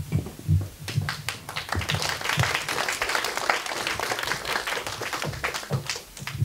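Audience applauding: a crowd's scattered hand claps that swell about a second in and thin out toward the end.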